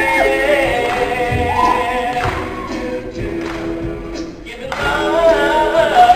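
All-male a cappella group singing in close harmony: held chords under a solo voice that glides in pitch. The sound dips briefly a little past four seconds in, then swells back louder.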